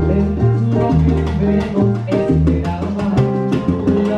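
Live salsa band playing, with a moving bass line under timbales, cymbals and other percussion striking in a steady rhythm.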